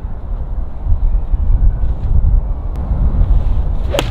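Wind rumbling on the microphone throughout, then right at the end one sharp click of a Wilson FG Tour V6 forged iron striking the golf ball and turf.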